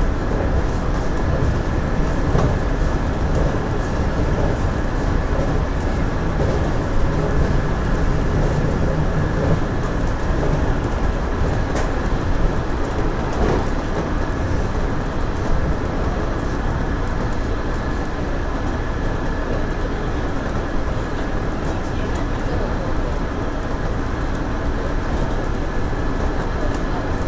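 JR Central 117 series electric train running along the line, heard from the driver's cab: a steady rumble of wheels on rail, a faint steady whine, and occasional light clicks.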